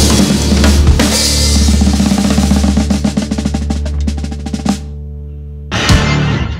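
A live blues-rock band ending a song. The drummer plays a roll that gets faster over a held chord and stops short. About a second later the whole band strikes one last loud chord that rings out.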